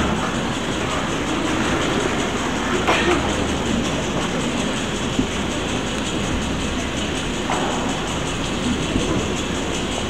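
Steady background noise of a gymnasium and the camcorder recording it, with a low hum, while a seated school band waits to play. A faint knock or shuffle comes about three seconds in and again near seven and a half seconds.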